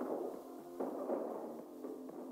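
Film soundtrack played low and muffled, cut off at both low and high pitches: music with gunshots about once a second, from the film's explosive shotgun rounds.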